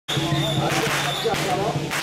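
Crowd voices with a whistle blown as a steady shrill tone through roughly the first second, broken by a few short crashing noise bursts.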